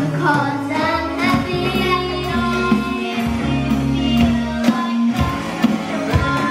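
A children's rock band playing live: young voices singing over electric guitars, bass guitar, keyboards and drums, with regular drum hits under the song.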